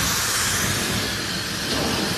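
Handheld hair dryer blowing steadily while drying hair, a loud, even rush of air.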